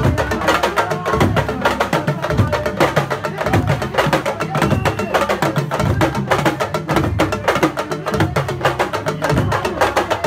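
Sabar drums playing a fast, dense, driving rhythm for dancing.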